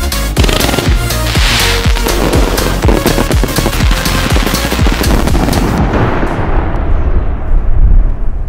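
Electronic dance music with a steady beat, mixed with the rapid bangs and crackle of fireworks. The high crackling stops about six seconds in, leaving a low rumble that swells toward the end.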